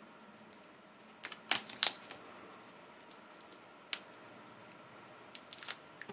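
Double-sided score tape and paper scraps being handled and pressed onto a craft-foam frame: a short cluster of sharp clicks a little over a second in, another single click a little before halfway, and a few light ticks near the end.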